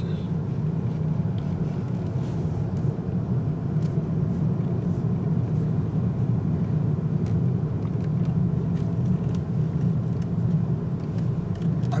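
Steady low rumble of a car's engine and tyres on the road, heard inside the cabin while driving.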